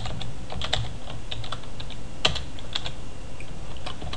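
Typing on a computer keyboard: irregular keystroke clicks, one louder about two seconds in, over a low steady hum.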